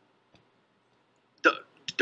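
Near silence, then a brief vocal sound from a man about one and a half seconds in, followed by a faint click just before speech resumes.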